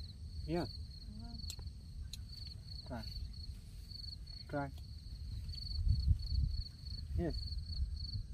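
Crickets chirping in a steady, high, pulsing trill with brief breaks, under a low rumble that swells about six seconds in.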